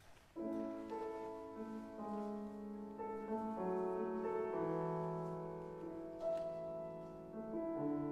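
Grand piano beginning a slow piece out of near silence, opening about half a second in with a loud chord. Held notes and chords follow, changing every second or so.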